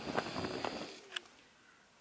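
Faint rustling and handling noise from things being moved about in an open soft-sided suitcase, with one sharp click about a second in, then it goes nearly quiet.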